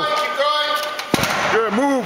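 A loaded strongman yoke set down hard on a concrete floor about a second in: one heavy thud, between shouted voices.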